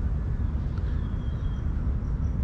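Outdoor ambience dominated by a steady, fluctuating low rumble, with a few faint high bird chirps.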